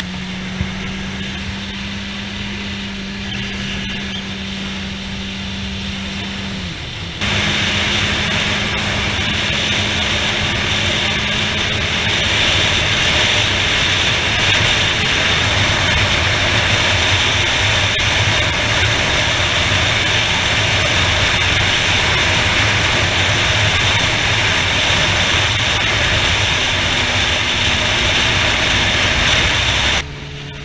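Motorcycle riding at road speed: a steady engine hum under the rush of wind on the handlebar-mounted microphone. About seven seconds in the sound jumps abruptly louder, and from then on the wind rush covers the engine.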